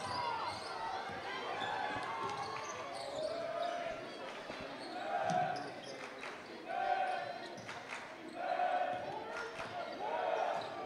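Basketball dribbled on a hardwood gym floor, with short impacts scattered through, and voices from players and the crowd calling out a few times in the middle and later part.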